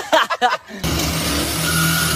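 A corded reciprocating saw starts about a second in and runs steadily, cutting into the sheet-steel top of an ATM cabinet.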